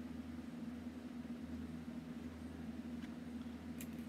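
A steady low hum of room background, with a faint click near the end.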